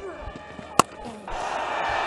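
Cricket bat striking the ball once, a sharp crack about a second in, as a short, wide delivery is hit away. Then stadium crowd noise swells.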